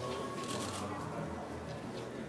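Rustling and handling noise, like fabric brushing against a phone's microphone, over indistinct background voices in a crowded room.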